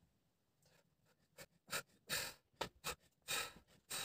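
A man's short, hard breaths, sharp puffs and gasps about two a second, starting about a second and a half in, as he strains through barbell bench-press reps.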